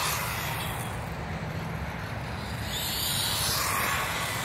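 Brushed electric motor and tyres of a 1/18-scale ECX Torment RC truck running on asphalt, a steady faint whirr with a higher whine building near the end.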